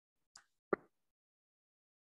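A faint tick, then a single short pop about three quarters of a second in; otherwise near silence.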